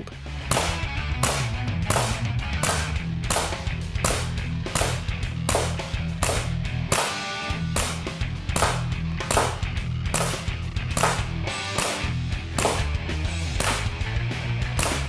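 Umarex Legends C96 CO2 BB pistol firing shot after shot, each a sharp crack with its blowback snap, about one every two-thirds of a second, over background music with a steady bass line.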